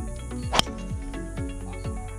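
A golf driver strikes the ball off the tee: one sharp crack about half a second in, over background music with a steady kick-drum beat.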